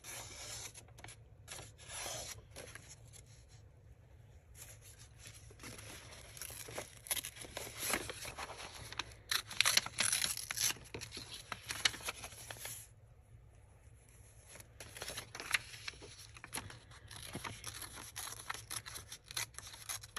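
An old printed book page being torn by hand along its folds, in several separate stretches of ripping and paper rustling, with a short pause partway through.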